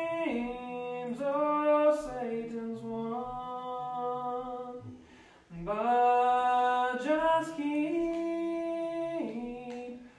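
Unaccompanied hymn singing in slow, long held notes that step from pitch to pitch, with a brief break for breath about halfway through.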